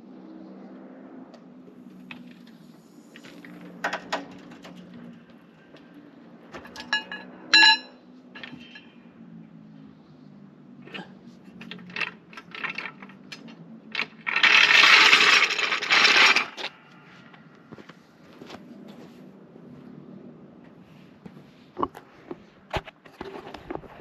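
Steel trolley jack being worked and pulled out from under a car: scattered metal clinks, one sharp ringing clink about a third of the way in, and a loud scrape for about two seconds just past the middle.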